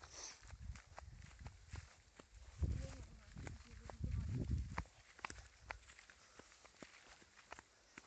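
Footsteps walking and running along a dirt path through tall grass: a string of short, light steps and rustles, with a couple of low rumbles about three and four seconds in.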